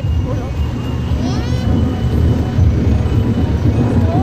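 Outdoor street ambience: a steady low rumble with distant voices, one calling out briefly about a second in.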